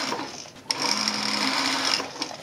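Pfaff industrial sewing machine stitching through the leather shaft of an over-knee boot. It runs, stops briefly about half a second in, then runs on steadily.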